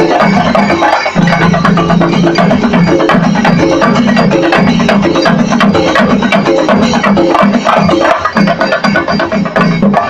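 Kerala temple band: fast, continuous chenda drumming with cymbals (singari melam), with wind instruments of a band melam playing a melody of low held notes.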